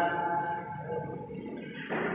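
A man's voice amplified through a PA loudspeaker: a drawn-out last syllable rings and fades in a reverberant hall over about a second, followed by quieter room echo until speaking picks up again near the end.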